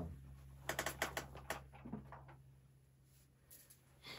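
Plastic clicks and rattles from a G.I. Joe toy boat with loose action figures inside as it is handled and moved. A quick run of clicks comes about a second in and a few more around two seconds, over a steady low hum.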